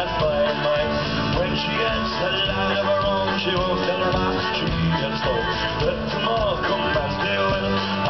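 Celtic rock band playing live, an instrumental passage between vocal lines: fiddle over guitars and drums.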